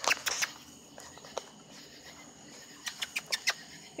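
Short sharp clicks or taps: a few at the start, one about a second and a half in, and a quick run of about six near the end. Faint steady high chirring of night insects runs underneath.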